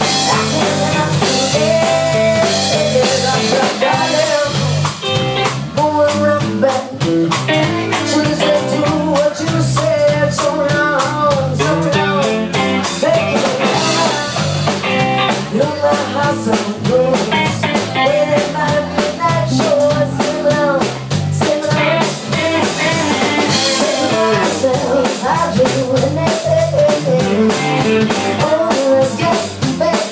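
Live blues-rock band playing: electric guitar, acoustic guitar, electric bass and drum kit, with a steady drum beat.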